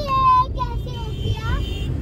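A young girl's high-pitched voice in the back seat: a few short calls in the first second, then a rising one, over the steady low rumble of the moving car heard inside the cabin.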